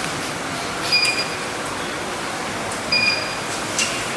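Steady hiss of room background noise with no voice. A brief high chirp comes about a second in and again about three seconds in.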